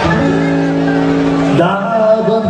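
Live band music: a chord held steady for about a second and a half, then moving to new notes near the end.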